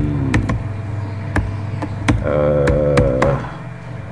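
Computer keyboard keystrokes: a handful of separate sharp clicks at an uneven pace as an email address is typed. Midway a voice holds one steady drawn-out tone for about a second, over a constant low hum.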